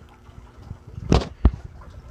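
A short scuffing rustle about a second in, followed by a single sharp knock.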